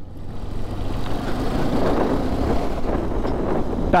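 KTM 390 Adventure's single-cylinder engine running while the motorcycle is ridden, mixed with wind and road rush. The sound swells over the first couple of seconds, then holds steady.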